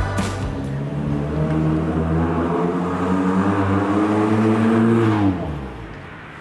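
Honda City Hatchback's 1.5-litre naturally aspirated VTEC engine, fitted with a Max Racing aftermarket exhaust and intake, pulling away under acceleration. The engine note climbs steadily for about four seconds, then drops and fades quickly near the end.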